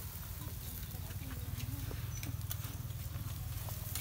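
Metal tongs turning meat on a wire grill rack over charcoal: scattered small clicks and taps of metal on metal, over a steady low hum.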